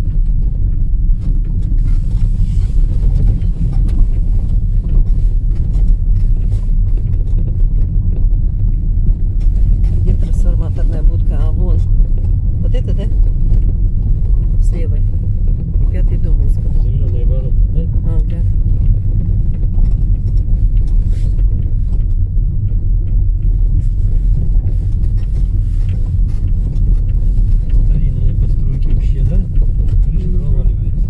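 Car driving slowly on a gravel dirt road, heard from inside the cabin: a steady low rumble of engine and tyres.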